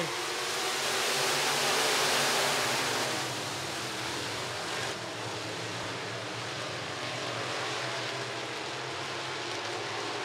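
A pack of IMCA Sport Mod dirt-track race cars with V8 engines, all accelerating together on a race restart. The dense engine noise swells over the first three seconds, then settles into a steadier, slightly quieter drone.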